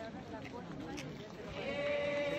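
A procession of people singing a hymn together; a phrase ends at the start, there is a short lull of mixed voices, and a new long-held note begins about one and a half seconds in.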